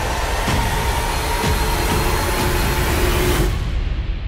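Trailer sound design: a loud rushing noise under a steady high tone, with a faint pulse about twice a second, cutting off sharply near the end.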